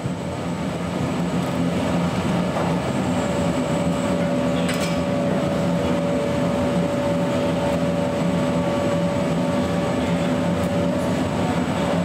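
Airport baggage-handling conveyor belts running with suitcases on them: a steady mechanical rumble with a low hum and a thin steady tone through most of it. A single sharp click about five seconds in.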